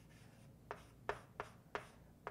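Faint, short strokes of handwriting on a writing surface, four of them in the second half.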